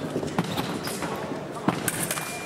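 Sabre fencers' footwork on the piste: quick stamping and shuffling footsteps in a run of sharp knocks, with one louder crack near the end, over voices in the hall.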